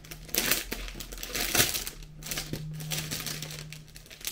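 Clear plastic wrapping crinkling and rustling in irregular bursts as it is pulled off a manga volume.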